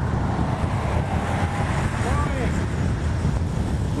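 Wind buffeting the microphone of a camera riding on a moving bicycle: a steady low rumble, with a faint voice briefly about halfway through.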